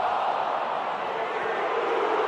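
Stadium crowd at a football match: a steady roar of many voices.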